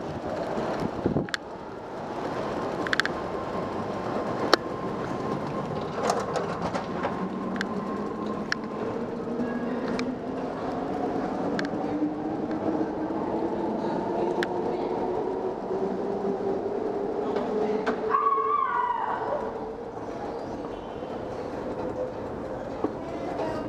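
BART train's electric traction motors whining, the whine rising slowly and steadily in pitch as the train accelerates out of the station, over a steady hum with scattered sharp clicks and knocks.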